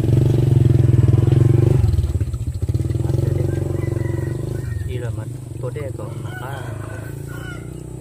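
A small engine running, with a fast, even pulse. It is loudest for the first two seconds, then quieter and fading, with voices over it in the second half.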